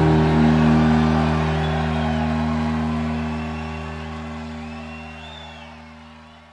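A rock band's final chord on bass and electric guitar, held and slowly fading away.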